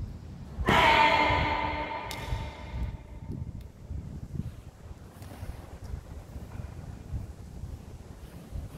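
A karate kiai, one sharp pitched shout about a second in, its echo hanging in the hall for a couple of seconds, followed by faint low thuds.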